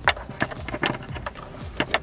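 A few sharp clicks and knocks, spread over two seconds, of a screwdriver prying at the plastic fuel-hose quick-connect fittings on an Audi A4 B6 fuel pump flange as the hoses are worked loose.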